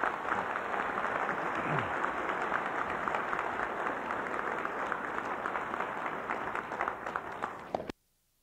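Audience applauding, a steady dense clapping that cuts off suddenly near the end as the recording stops.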